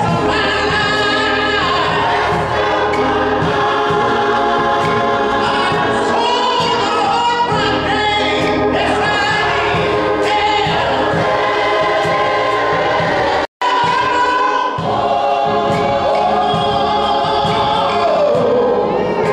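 Gospel choir singing with a male soloist at the microphone, over organ accompaniment. The sound drops out for a split second about two-thirds of the way through.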